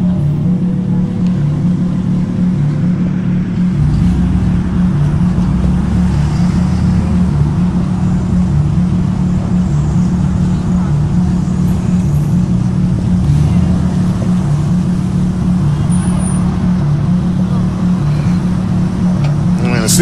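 Vehicle noise: a steady low engine hum, with a deeper rumble joining about four seconds in.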